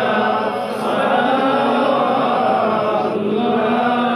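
Men's voices chanting together in a slow, sustained devotional melody, the notes drawn out rather than spoken.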